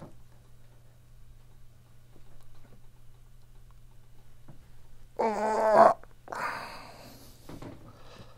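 Quiet room with a faint steady low hum; about five seconds in, a man makes a short wordless vocal sound with a wavering pitch, followed by a breathy exhale.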